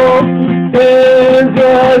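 A voice singing long held notes over strummed guitar chords, the held note breaking off briefly a quarter second in and picking up again.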